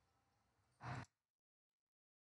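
A man's short exhale, a brief breath about a second in, in otherwise near silence.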